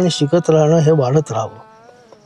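A man's voice, loud for about the first second and a half, then trailing off into a faint, steady hum.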